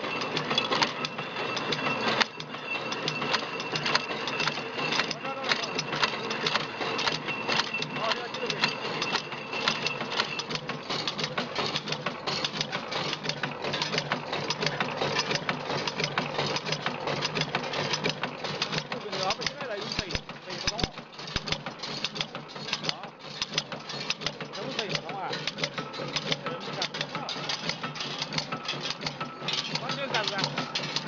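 Motorcycle wheel spoke tapering and shrinking machine running, with a rapid continuous mechanical clatter over a steady motor hum. A high steady whine runs alongside for the first ten seconds or so, then stops.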